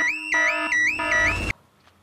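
Cartoon house burglar alarm sounding: a loud electronic warble repeating about three times a second, cut off suddenly about a second and a half in.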